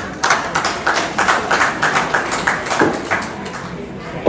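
Hand clapping: quick, uneven claps, about five or six a second.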